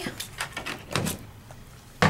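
Clear plastic cutting plates and a Sizzix multipurpose die-cutting platform being handled and lifted: a few short plastic clicks and knocks, mostly in the first second.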